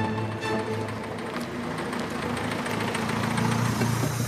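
A car engine running as the car drives up and passes close by, getting louder towards the end, under background music.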